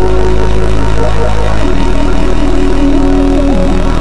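Electronic music: a heavy, buzzing sustained bass with synth lines held above it. The bass note changes about a second and a half in, and one synth line slides down near the end.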